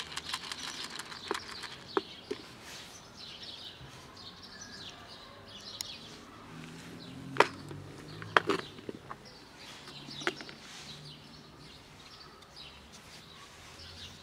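Small birds chirping, with a few sharp plastic clicks in the middle as a clip-lid plastic food container is handled, opened and set down; the loudest click comes about halfway through.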